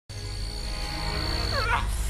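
Low, rumbling film-score drone with a thin steady high whine that stops about one and a half seconds in, where a short animal cry sweeps up and down in pitch.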